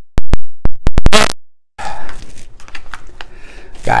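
A quick run of loud, sharp digital clicks over dead silence in the first second or so, the pops of an edit point, then a short silence and soft handling and rustling noises with small ticks.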